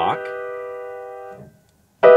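A piano chord played as a block, built on the grace-note notes B, D-sharp and E with a bottom note added, held and slowly fading. It is released about one and a half seconds in, and another chord is struck at the very end.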